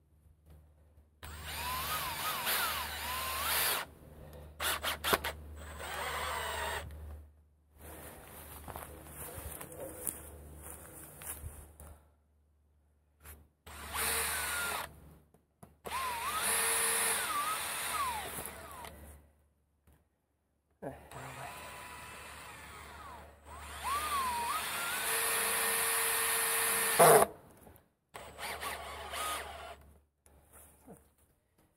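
Makita cordless drill run in about eight short bursts against a wooden post, its motor whine rising and falling as the trigger is squeezed and let go. There is a sharp, loud knock near the end.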